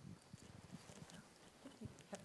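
Near silence with a few faint footsteps and light shuffling as a person walks up to the lectern.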